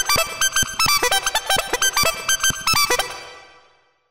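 Synthesizer playing a randomly generated melodic riff in G major pentatonic: a quick run of short notes stepping between pitches. The notes fade away from about three seconds in.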